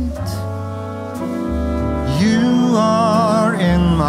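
Slow jazz ballad: sustained chords over a deep bass note. About two seconds in, a male voice comes in with a short phrase, holding its last note with a wide vibrato.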